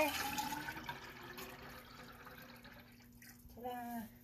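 Liquid ceramic glaze poured from a tub into a plastic graduated cylinder, filling it for a specific-gravity measurement. The pour is loudest at the start and trails off over about three seconds.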